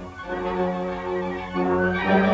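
Orchestral film score: sustained string chords that swell louder, changing chord about one and a half seconds in.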